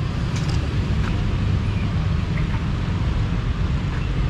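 Street traffic noise: a steady low rumble from motorbikes and cars passing on the road.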